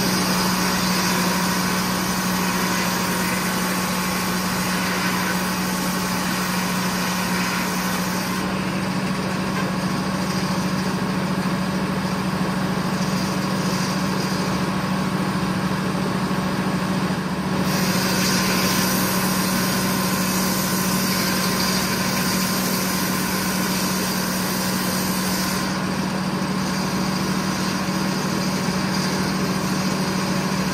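A circular sawmill running: the power unit and big circular head saw turn over with a steady, constant hum. Twice a brighter, hissier noise rises over it for about eight seconds, once at the start and again about 18 seconds in, and it rises a third time near the end.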